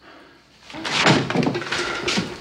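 A door banging shut about three-quarters of a second in, the clatter running on for about a second, on a film soundtrack.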